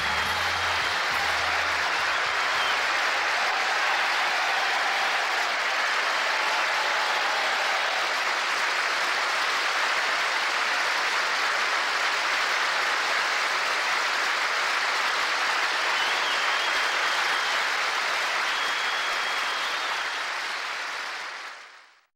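Audience applauding steadily, with the last low notes of the music dying away in the first few seconds. The applause fades out just before the end.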